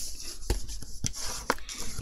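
Cardstock strips being folded and handled by hand: paper rustling, with two light taps about a second apart.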